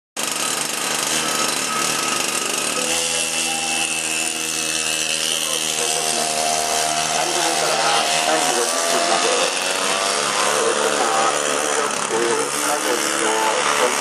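Small racing kart engine running and revving, its buzz rising and falling in pitch as the kart pulls away and drives along the track.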